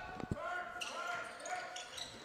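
A basketball bouncing on a hardwood gym floor: two thumps right at the start, then quieter gym sound with a faint steady tone.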